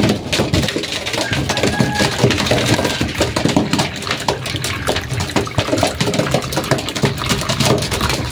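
Several pigeons drinking from a plastic drinker: a dense, irregular run of light clicks and taps from beaks and feet against the plastic and the floor.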